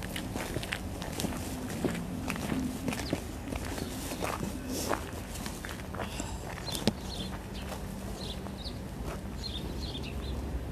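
Footsteps on snow and ice, an uneven run of steps by someone walking, with a faint steady low hum underneath.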